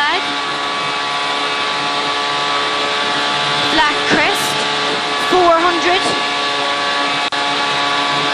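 Ford Fiesta rally car's engine running hard at high revs, heard from inside the cabin, its note held mostly steady while the car is driven flat out along the stage.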